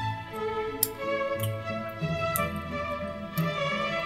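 Background music led by bowed strings, playing slow held notes, with a few faint clicks over it.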